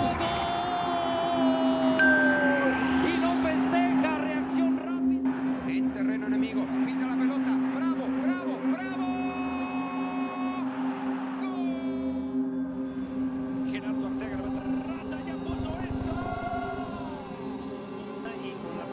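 A Spanish-language football TV commentator's long drawn-out goal call, held on one pitch and falling away about three seconds in. After it come busy match broadcast sound and a steady low drone.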